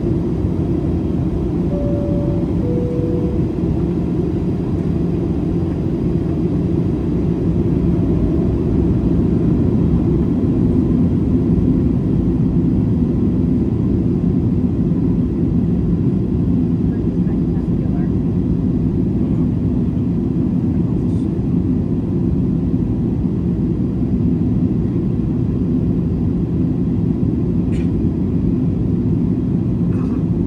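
Steady cabin noise of a Boeing 737-800 in flight, heard from a seat over the wing: the CFM56 engines and the airflow as an even low rumble. About two seconds in, a two-note cabin chime sounds, high then low.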